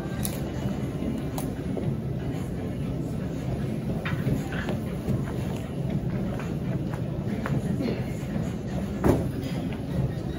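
Steady low rumble with scattered clicks and rattles, and one louder knock about nine seconds in.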